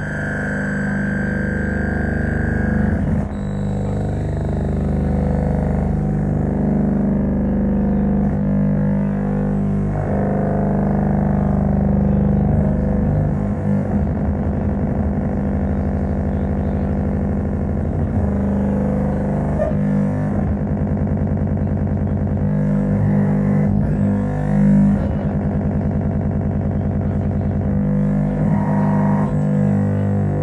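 Experimental electronic drone music: dense layers of low, held tones that shift slowly. A thin high tone sounds over it at the start, and a fast pulsing texture runs through the latter part.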